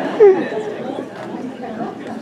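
Chatter: people talking, with one louder voice briefly near the start, then quieter murmuring.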